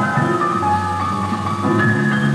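Instrumental film score: a melody of steady notes changing every fraction of a second over a low held note.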